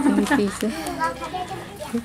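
Speech only: people talking.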